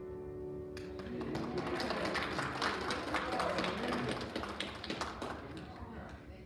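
A held musical chord ends about a second in, and a congregation then applauds, a dense patter of hand claps that tapers off near the end.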